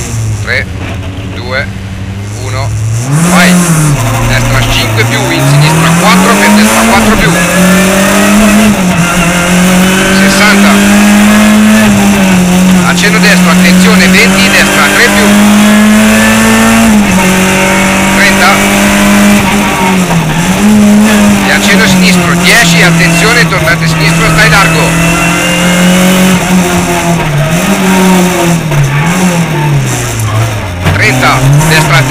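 Rally car engine heard from inside the cockpit: running low and steady for the first few seconds, then revving hard and pulling away, its pitch climbing, holding and dipping again several times as the driver changes gear and lifts.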